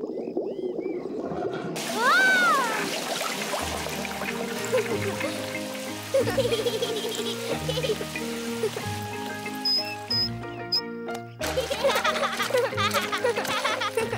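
Cartoon water sound effect: a garden hose gurgles, spurts with a rising-and-falling squeak about two seconds in, then sprays steadily into an inflatable paddling pool. A cheerful music cue comes in about four seconds in and runs under the water, with splashing in the pool near the end.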